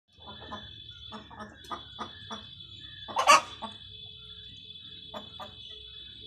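Native Kerala chickens (nadan kozhi) in a wire-mesh cage clucking in short quick runs. About three seconds in comes one much louder, sudden burst.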